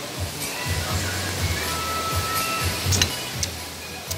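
Background music with a low, pulsing bass over a steady hiss, with a few faint clicks near the end.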